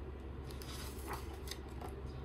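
A page of a hardcover picture book being turned by hand: a few light, papery rustles and swishes.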